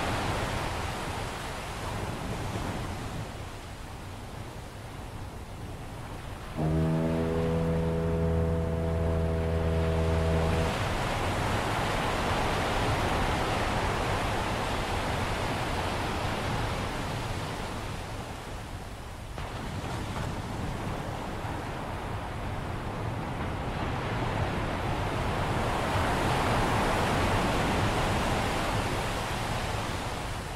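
A foghorn sounds one low, steady blast lasting about four seconds, starting about a quarter of the way in. Around it, ocean waves wash continuously, swelling and ebbing in loudness.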